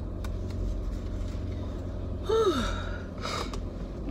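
A woman's sighing exhale, its pitch falling, a little over two seconds in, then a short breath, over the steady low hum of a car engine heard inside the cabin.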